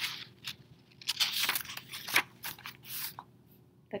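Book pages being flipped back by hand: a quick series of papery rustles and swishes over the first three seconds, then it goes quiet.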